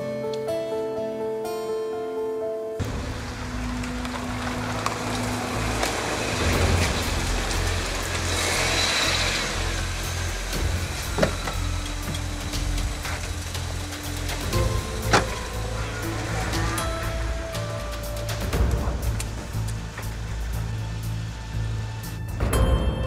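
Soft background music runs throughout. After a few seconds a car's engine and tyre noise come in under it, and there are two sharp knocks, about halfway through and a few seconds later, like a car door shutting.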